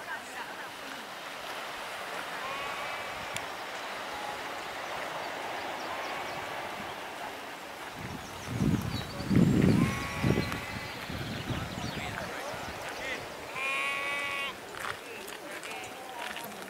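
Sheep bleating several times, short wavering calls, with wind buffeting the microphone for a couple of seconds past the middle.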